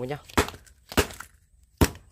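Three sharp knocks in under two seconds as a molded power strip is struck hard, a rough-handling test to show it doesn't break.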